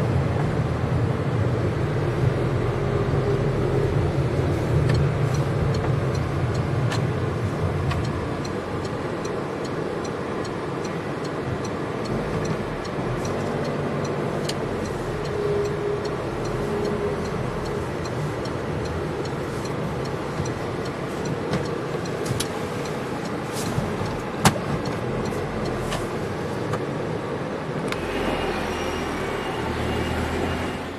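Car driving slowly, with engine hum and road noise heard from inside the cabin; the low hum drops about a quarter of the way in. A single sharp click sounds later on.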